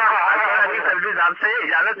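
Speech: a person talking without a break.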